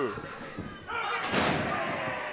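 A heavy thud on a wrestling ring about a second in, as a wrestler's body lands on the canvas.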